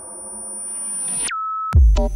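Electronic music in a DJ mix: a soft pad swells with rising hiss, then a high pure tone swoops sharply down in pitch and holds a steady note. After a split-second gap, a loud, deep kick-and-bass beat drops in near the end.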